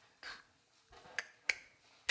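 Faint footsteps on a hardwood floor: a soft step, then two sharp clicks close together about a second and a half in.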